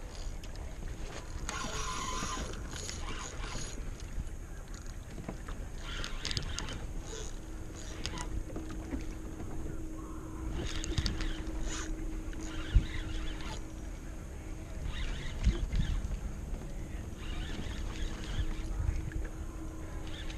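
Water sloshing against a kayak hull, with scattered clicks and handling noises from the rod and spinning reel while a hooked fish is being played. A faint steady hum runs through the second half.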